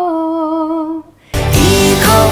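A woman's unaccompanied voice holds a long sung note that stops about a second in. A recorded pop song with full instrumental backing and a lead vocal then comes in abruptly and much louder.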